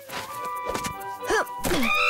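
Cartoon sound-effect thuds as a character jumps down and lands, over background music, with short vocal exclamations near the end.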